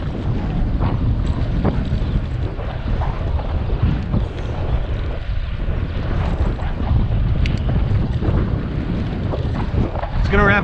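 Wind buffeting the microphone of a body-mounted action camera while cycling, a steady low rumble with the bicycle's tyres running over rough pavement. A few faint clicks and rattles come through.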